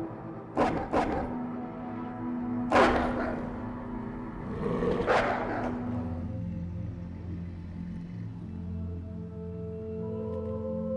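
Dramatic film score of sustained held notes, broken in the first half by four loud, harsh bursts from a wolf. Deeper held notes come in about six seconds in.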